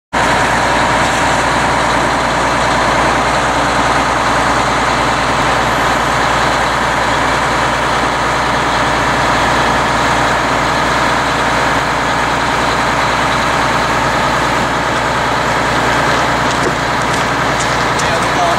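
Mobile crane's diesel engine running loudly and steadily at a constant speed, powering the hoist while a pool shell hangs on the hook.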